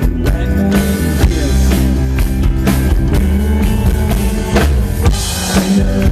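A rock band playing live through a PA: drum kit beating over bass and guitars.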